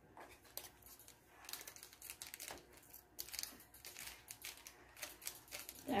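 Faint, scattered crinkling of a small shiny plastic blind bag being squeezed and pulled at by hands struggling to open it.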